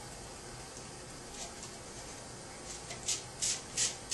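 Trigger spray bottle squirting a heat-shield gel onto a Styrofoam cup: about four quick sprays, each a short hiss, in the last second or so.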